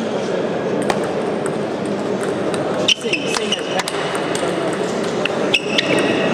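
Table tennis rally: a celluloid ball clicking sharply and irregularly off bats and table, over a steady murmur of voices in a large hall.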